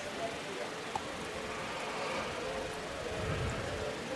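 Faint open-air ballpark ambience: a low murmur of voices with a thin steady hum under it, and a small click about a second in.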